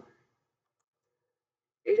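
Near silence in a pause between spoken words, with the tail of a woman's speech at the start and her speech resuming near the end.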